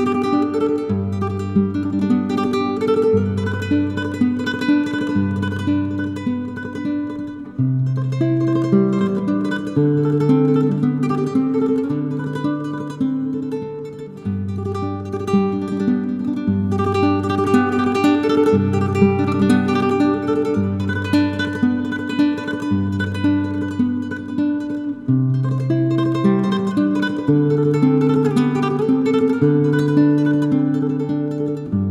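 Solo nylon-string guitar playing a plucked melody over low bass notes that change about every two seconds, the phrase starting over roughly every eight to nine seconds.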